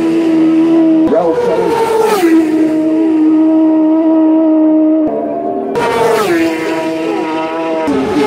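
Racing motorcycle engine held at high revs, a steady high note whose pitch drops sharply about a second in, again at two seconds, and once more past six seconds.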